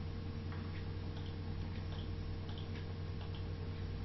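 A few faint, irregularly spaced computer mouse clicks over a steady low hum.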